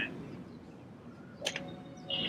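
Faint background hum. About a second and a half in there is a click, then a short steady electronic tone: the K-Vest motion-sensor vest's audible feedback, which sounds when the swing reaches a good position in the backswing.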